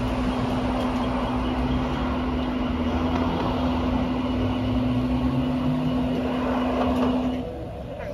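A car on the move: steady road and engine noise with a low rumble and a constant hum. It drops off sharply near the end.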